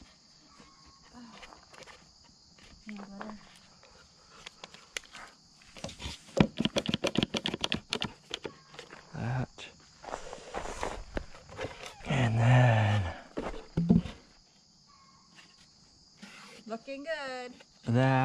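Hands-on carpentry sounds from fitting and clamping wooden siding boards: scattered knocks and handling noises, with a dense run of quick clicks in the middle. Short low voice sounds come in near the end, over a steady high hiss.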